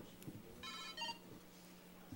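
A faint, short electronic tone like a phone ringtone, about half a second long and near the middle, over a low steady electrical hum.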